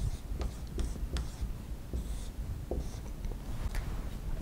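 Dry-erase marker writing on a whiteboard: faint, scattered squeaky strokes and small taps as figures are drawn.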